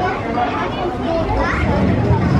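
Children's voices talking and calling out, over a steady low rumble.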